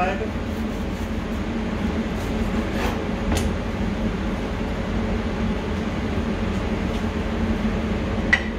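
Steady ventilation hum of a commercial kitchen, with a couple of short clicks about three seconds in from a knife cutting through a sandwich onto a plastic cutting board.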